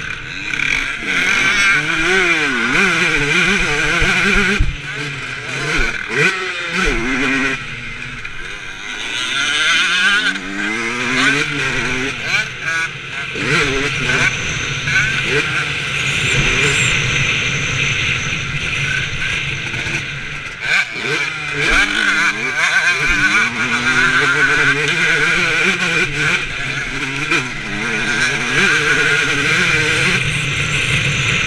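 Motocross dirt bike engine heard up close from the bike itself, revving up and dropping back over and over as the rider accelerates, shifts and slows through the track's straights and turns.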